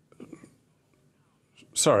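Speech only: a pause in conversation, faint at first and then near silent, before a man's voice says "sorry" near the end.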